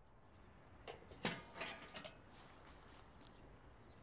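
A few faint, short knocks and clicks, mostly in the first half, over a quiet background.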